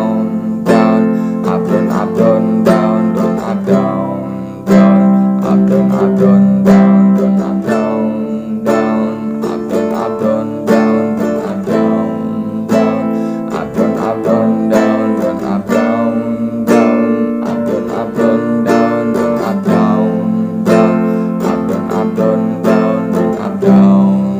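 Nylon-string acoustic guitar strummed in a steady rhythm, playing the song's intro progression of C, G, Am, Em, F, C and G with a down-down-up-down-up-down strumming pattern.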